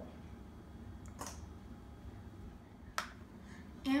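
Two short taps of kitchenware, a soft one about a second in and a sharper one near three seconds, as a small plastic bowl is emptied into a stainless steel mixing bowl and set down on the counter.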